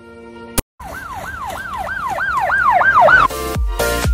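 A siren-style wail of quick repeated falling sweeps, about three and a half a second, growing louder after a brief click. It gives way near the end to music with a heavy beat.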